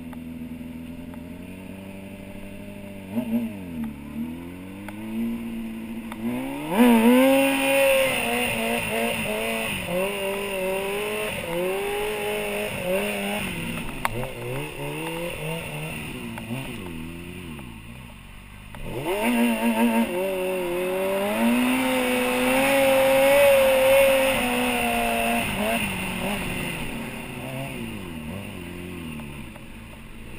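Stunt motorcycle's engine heard from a camera on the bike: running low at first, then revved up and held at wavering, rising and falling revs while the bike is ridden on its back wheel. The revs drop briefly a little past halfway, climb again, and ease off near the end.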